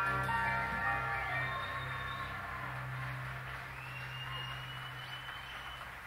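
A rock band's final sustained chord ringing out and slowly fading at the end of a live song, with a low steady note holding underneath.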